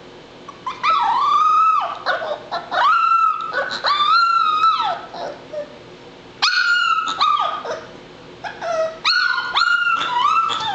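Labrador Retriever puppy whining and crying: a run of high, drawn-out cries, each rising, holding and dropping away, in several bouts with short pauses between.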